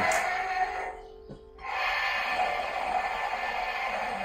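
Electronic roar sound effect from a Playmates 13-inch Godzilla toy's small built-in speaker, not very clear; it dies away about a second in and starts again shortly after.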